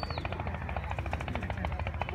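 An engine running with a rapid, even chugging over a steady low hum.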